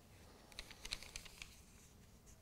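A handful of faint, light taps and clicks over about a second, against quiet room tone.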